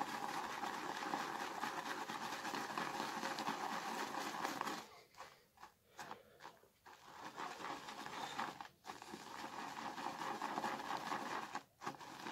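Shaving brush whipping soap lather in a shaving bowl: a steady wet, scratchy swishing as the lather thickens and gets denser. It breaks off for a couple of seconds around the middle and then starts again.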